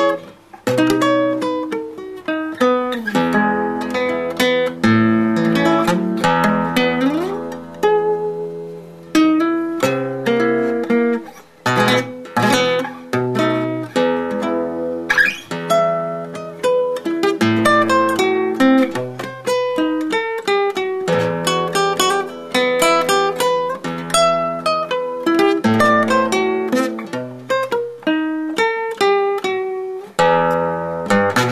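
Solo classical guitar played fingerstyle: a continuous piece of plucked single notes and chords, with a brief pause about twelve seconds in.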